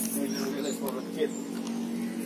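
Faint voices over a steady low hum.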